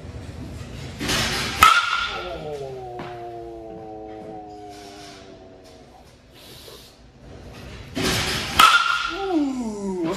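A two-piece composite USSSA baseball bat, a Marucci Cat 9 Composite, striking pitched balls twice: a sharp crack with a brief ring, about a second and a half in and again near the end. Between the hits a long held note sounds and slowly fades.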